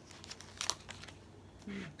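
A paper sticker sheet being handled, crinkling in a few short crackles about half a second in.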